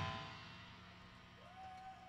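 The last chord of a live heavy rock band, electric guitars and drums, dying away over the first half second, leaving a faint, steady, low amplifier hum. A faint, brief wavering tone rises and falls near the end.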